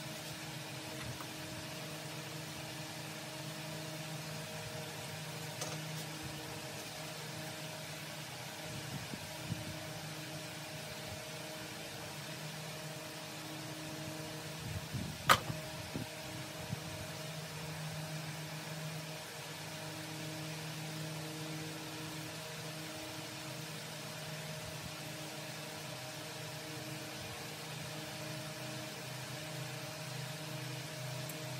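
Steady mechanical hum with a low drone, with a few small clicks and one sharp click about halfway through.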